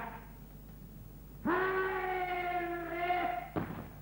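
A single voice holds one long, steady-pitched note for about two seconds, starting about a second and a half in. A sharp thump follows near the end.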